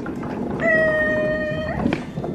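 A flat platform cart rolling across a stage floor with a low rumble. Over the rumble, one long, steady, high-pitched tone starts about half a second in, holds for over a second, and bends upward as it cuts off.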